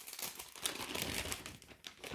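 An envelope crinkling and rustling as it is handled and opened, with irregular crackles throughout.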